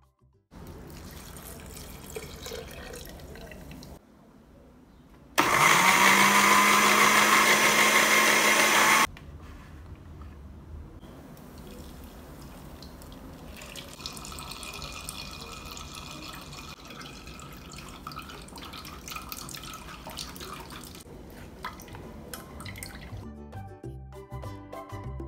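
Countertop blender running for about three and a half seconds, its motor spinning up at the start as it purées sweet corn kernels with milk. Later, the thick blended mixture pours from the blender jar through a mesh strainer into a metal saucepan.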